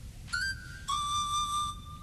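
Two held whistle-like notes: a short higher one about a third of a second in, then a longer, lower one that starts about a second in and stops just before the end.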